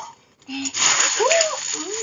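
Clear plastic bag crinkling and rustling as hands rummage through the banknotes inside it, starting about half a second in.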